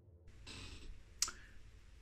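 A faint, short stretch of hiss-like rustle, then a single sharp click a little past one second in.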